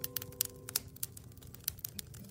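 Wood fire crackling in a wood-burning stove: irregular sharp snaps and ticks. An acoustic guitar chord rings out and dies away in the first second.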